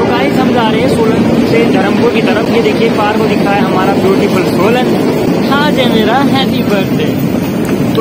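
Narrow-gauge toy train running, a steady rumble heard from inside the carriage, with passengers' voices chattering over it.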